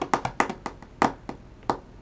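Computer keyboard typing: irregular key clicks, several a second at first, thinning out toward the end.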